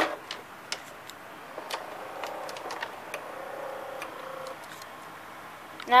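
Samsung VR5656 VCR loading a cassette back in: a string of light mechanical clicks from its carriage and loading gears, with a faint motor whine in the middle.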